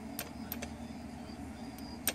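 Small electric motor of a Black & Decker drill running steadily with a low whir, with three faint ticks in the first second.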